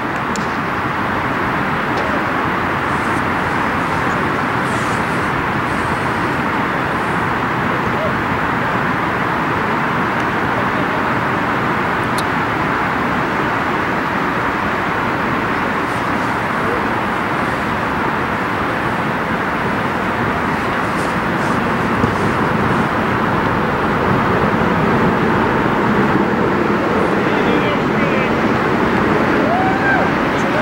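Steady roar of road traffic, a continuous even rushing with no engine note standing out. Faint calls from players come over it near the end.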